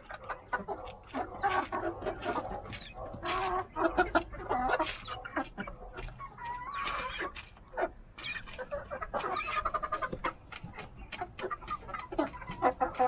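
A flock of Rhode Island Red chickens clucking and calling over and over while feeding, with many short sharp ticks from pecking among the calls.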